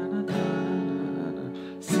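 Acoustic guitar capoed at the second fret: an E minor shape chord, sounding F♯ minor, strummed once about a quarter second in and left to ring and fade. A C shape chord is strummed near the end.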